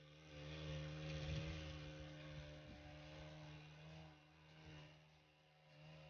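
A faint engine running steadily at an even pitch, a little louder in the first couple of seconds and then easing off.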